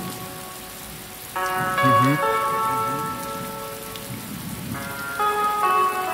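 Intro of a hip-hop track: a steady hiss, joined about a second and a half in by a sustained chord that shifts near the end, with a short hummed 'mhm' ad-lib about two seconds in.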